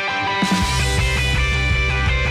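Rock karaoke backing track playing its instrumental intro: guitar, joined about half a second in by the full band, with bass and a steady drum beat and cymbals.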